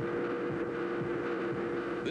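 Steady electronic drone of two held tones over a noise haze, crossed by a few short falling swoops.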